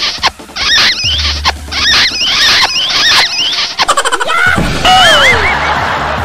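Background music track with short, high squeaky glides repeating about twice a second over a steady bass. About four and a half seconds in, the squeaks give way to a lower wavering, sliding tone.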